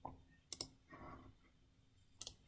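Two quick, faint computer mouse clicks about half a second in, followed by a brief soft noise, over quiet room tone.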